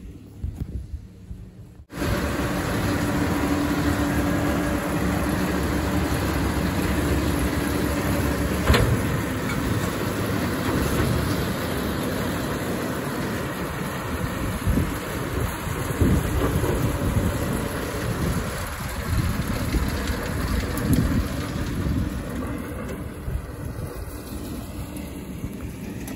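Tractor and Kuhn VB 2155 round baler running steadily while baling flax, a continuous mechanical din that cuts in abruptly about two seconds in. A single sharp click about nine seconds in.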